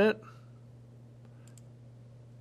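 Two faint computer mouse clicks about one and a half seconds in, over a steady low hum.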